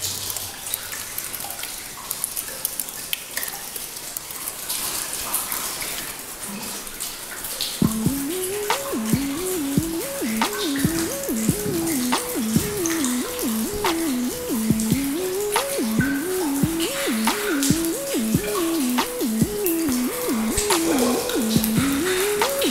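Water dripping from the ceiling and icicles inside an ice-covered tunnel, a steady scatter of small drips over a hiss of seeping water. About eight seconds in, a simple repeating music melody comes in over the drips and stays louder than them.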